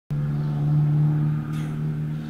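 A single low note held steady on an electronic keyboard, sustained without fading.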